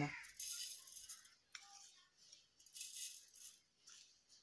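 Granulated sugar poured from a plastic scoop into a steel jar over mango pieces: a faint, high rattle of granules, in two short runs.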